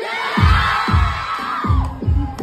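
Live rock band heard through a phone recording from the audience: a long high note rises, holds and drops away near the end, over a kick drum beating about twice a second, with the crowd shouting.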